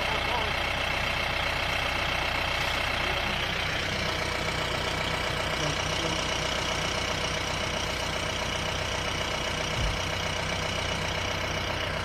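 Safari jeep's engine idling steadily, with a steady high-pitched drone over it and one brief low thump near the end.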